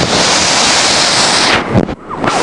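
Loud, steady rush of churning whitewater, mixed with wind buffeting the microphone; the noise dips briefly near the end.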